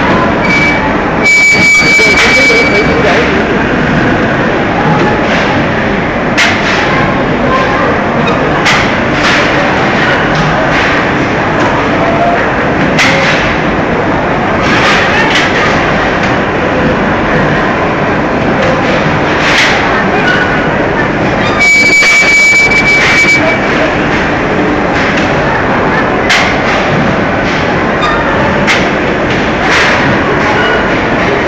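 Factory chain conveyor with large spoked gear wheels running, a steady dense clatter and rattle with frequent sharp knocks. Twice a brief high steady tone sounds, each for about a second and a half: once near the start and once about two-thirds through.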